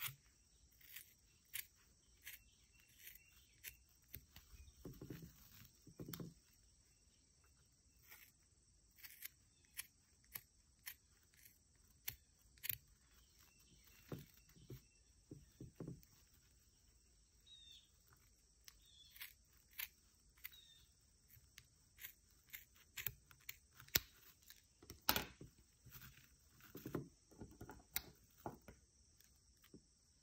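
Scissors cutting through knitted wool along a needle-felted steek: a series of faint, short snips at irregular intervals, a few louder ones in the second half.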